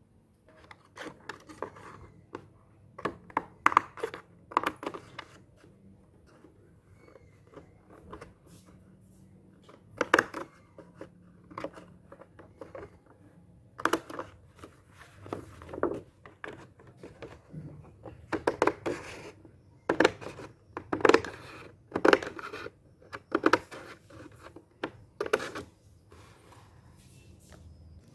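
Scissors cutting through a sheet of stiff calendar paper, trimming off the spiral-bound edge in a series of irregular sharp snips.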